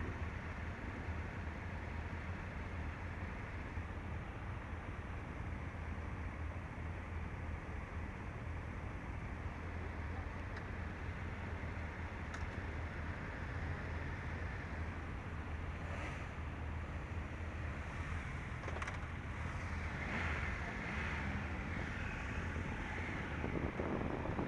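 Motorcycle engines idling steadily, a constant low hum with no revving.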